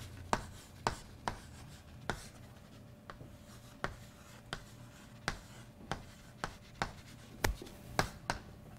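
Chalk writing on a blackboard: sharp, irregular taps as the chalk meets the board, roughly two a second, with faint scratchy strokes between them.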